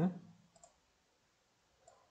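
Two faint computer mouse clicks, the first about half a second in and a fainter one near the end.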